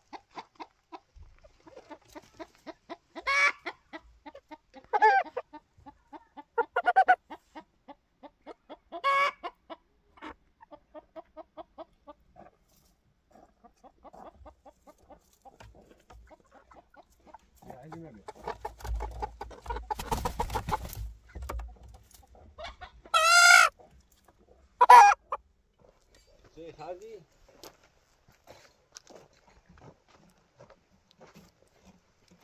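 Roosting domestic hens clucking in a run of soft notes, with louder calls every couple of seconds. A short rustling burst comes about two-thirds through, followed by the two loudest calls near the end.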